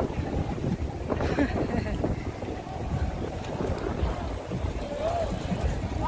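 Wind buffeting the microphone as a low rumble, with indistinct crowd voices underneath.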